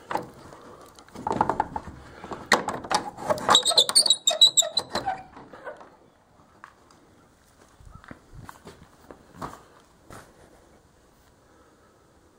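Wooden barn tack-room door being unlatched and pulled open: a rattle and clatter of the latch and boards, with a high squeak from the door about three and a half seconds in. A few soft knocks follow after it opens.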